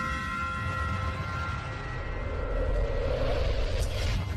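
A low rumbling drone under several steady high tones, with a noisy swell building in the second half and a short whoosh near the end.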